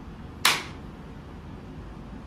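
A sumo wrestler claps his hands once, loudly, as part of the chiri-chozu ritual. The sharp clap comes about half a second in and dies away quickly in the room.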